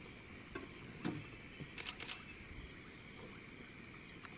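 Crickets and other night insects trilling steadily, with a quick run of sharp camera-shutter clicks about two seconds in.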